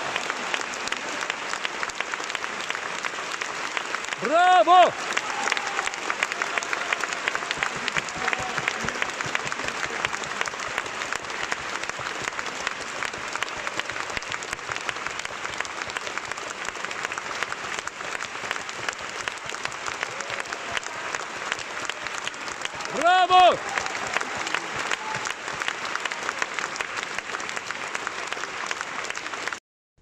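A concert-hall audience applauding steadily at the end of an operatic aria. Two loud shouts rise out of the crowd, about four seconds in and again some twenty seconds later. The applause cuts off suddenly just before the end.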